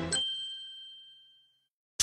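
A single bright ding, a chime sound effect marking an edit transition, struck once and ringing away over about a second and a half.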